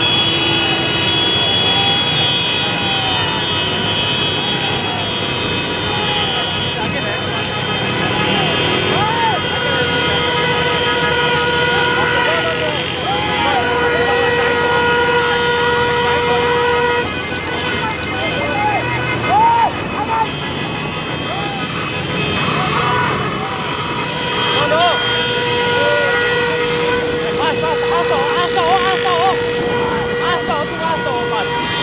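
Vehicle horns held in long steady blasts, one stopping abruptly about seventeen seconds in, over voices and the running of motorcycle and jeep engines in a slow-moving convoy.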